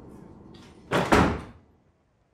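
A door shutting with a heavy double thud about a second in.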